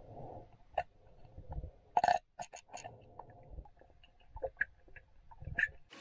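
Faint gurgling and knocking, with a cluster of sharp clicks about two seconds in, as the plastic strap and quick-release buckle of an open-heel swim fin are handled and clipped shut.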